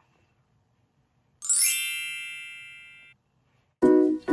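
A single chime sound effect about a second and a half in: a quick upward shimmer into a ringing ding that fades away over about a second and a half. Outro music with plucked notes starts just before the end.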